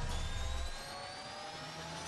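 Synthetic sci-fi intro sound effect: a hissing rush with several tones slowly rising in pitch, like a riser building up. A deep rumble underneath drops away under a second in.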